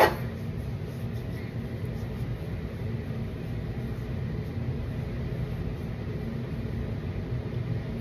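Steady low room hum with no distinct events.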